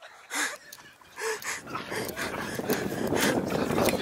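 Three people sprinting off across grass at a race start: a short shout near the start, then a rising rush of noise with scattered thuds.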